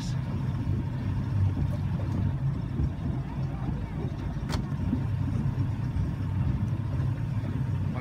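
Tow boat's engine idling with a steady low hum, heard from on board while the boat waits with the rope out to the skier in the water.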